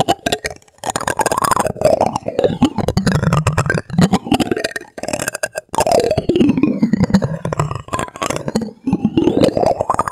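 A plastic spoon rubbed and pressed over the clear textured dome of a galaxy light projector, squeaking and creaking in long pitch glides that fall and rise, with fast rattling clicks as it catches on the ridges.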